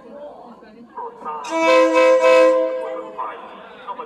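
Train horn sounding one blast of about a second and a half, a chord of several steady tones, beginning about a second and a half in. It warns of the train's approach as it enters the market.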